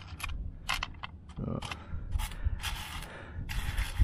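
Small pieces of raw amber clicking against one another and against a metal shovel blade as fingers stir and pick through a heap of them: a run of light, irregular clicks, with longer scraping rattles in the second half.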